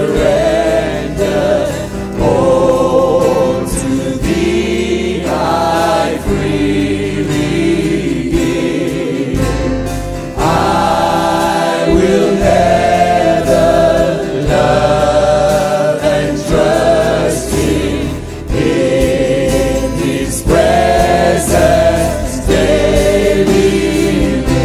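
Live worship music: singers leading a congregation over a full band.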